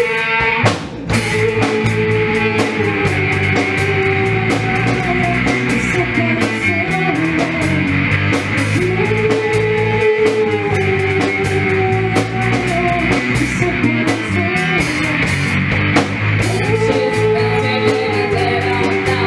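Live rock band playing: electric guitar and drum kit under a sung vocal melody, with a brief break in the sound about a second in before the band carries on.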